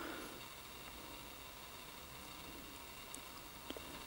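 Quiet room tone with faint handling noise from a plastic spray bottle being turned in the hand, and a few light taps near the end.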